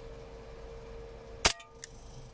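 WE Hi-Capa 5.1 gas blowback airsoft pistol firing a single shot: one sharp crack about a second and a half in, followed shortly by a fainter click.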